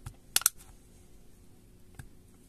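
Two quick sharp plastic clicks about half a second in, as a guitar pick prying along the edge of a Xiaomi Redmi 9T's back cover lifts it from its adhesive.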